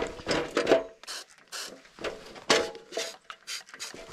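Footsteps on a gravel walking track strewn with dry leaves: a run of short, irregular scraping crunches.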